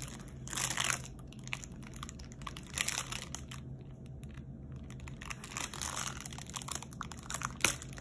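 Clear plastic protective film on a diamond painting canvas crinkling in a few short rustles as it is worked and pulled back by hand, with a sharp tick near the end; the film is stuck to the canvas's glue and won't lift.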